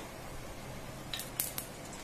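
Quiet room noise with a brief cluster of faint, sharp clicks a little past the first second.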